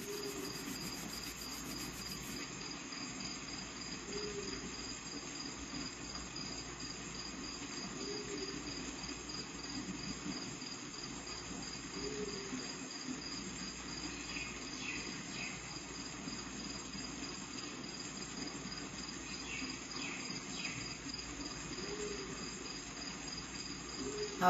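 Crickets chirping in a steady, continuous high trill over a low background hiss.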